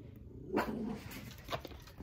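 A dog giving two short barks about a second apart, the first the louder.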